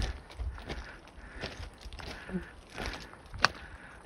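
Footsteps crunching irregularly on loose rock and scree along a rocky trail, with one sharp click on stone about three and a half seconds in.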